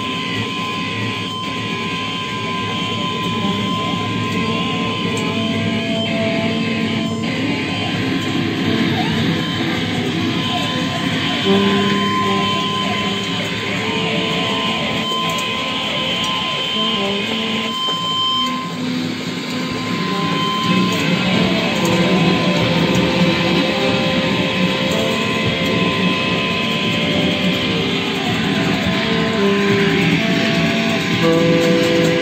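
Free-improvised drone music on electric guitar played through effects pedals and amplifiers: dense, sustained layered tones that shift slowly in pitch, over a steady high tone held throughout.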